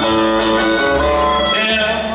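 Live country band music led by a nylon-string acoustic guitar, a Martin N-20 classical guitar, played over a steady bass line.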